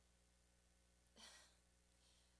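Near silence with one faint, short sigh into the lectern microphone a little over a second in.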